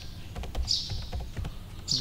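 Keys on a computer keyboard being typed in a quick run of about half a dozen clicks, spelling out a search word.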